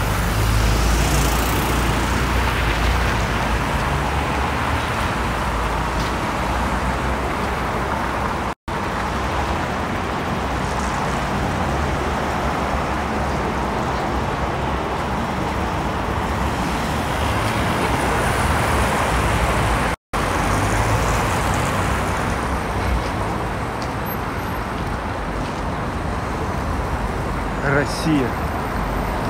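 Steady city road-traffic noise from cars and buses passing on a wide street, with a constant low rumble. The recording cuts out for a split second twice.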